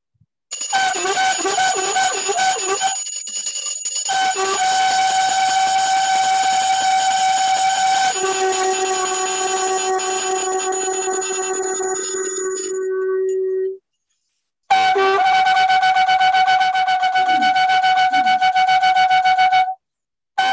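Wind-instrument music holding long, steady notes, with a lower held note joining partway through. It cuts out briefly twice: once about two-thirds of the way in and again just before the end.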